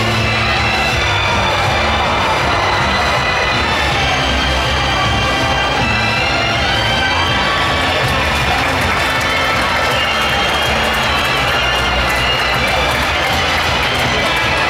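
Loud music with a steady beat playing through the arena, with a large crowd cheering over it.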